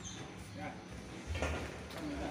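Faint voices of people talking at a distance, with a short knock about one and a half seconds in.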